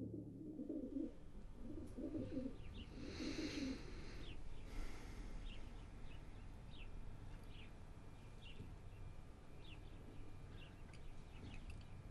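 Faint birdsong. A few low cooing calls sound in the first few seconds, then short, high chirps come scattered through the rest.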